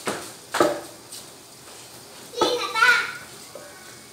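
Wooden pestle pounding boiled bananas in a stainless-steel pot: sharp strikes at the start, about half a second in, and about two and a half seconds in. A child's voice is heard around the three-second mark.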